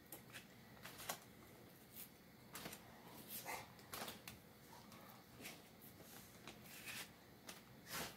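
Faint, irregular rustles and light crinkles of a plastic zip-top bag as thin slices of raw beef are peeled apart and dropped into it.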